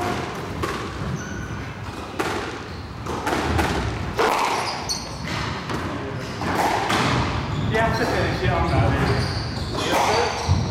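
A short laugh, then scattered knocks and thuds from the squash ball and players' steps, with short high-pitched squeaks of trainers on the court floor.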